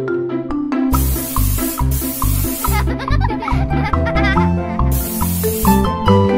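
Upbeat background music, with an aerosol can of coloured hair spray hissing in bursts of about a second: one about a second in and another near the end.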